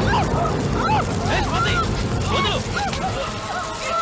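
Several women screaming and crying out in short, high, arching shrieks, one after another, over a steady rush of spraying water.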